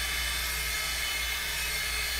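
Hot Tools Blow Brush, a hot-air styling brush, running steadily on a synthetic wig: a constant rush of air over a low motor hum.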